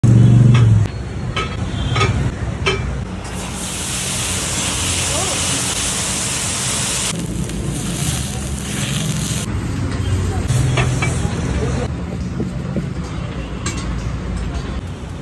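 Water hissing and sizzling on a hot cast-iron dosa pan as it is wiped down with a wet cloth, loudest in the middle of the stretch, with a few metal clanks in the first seconds.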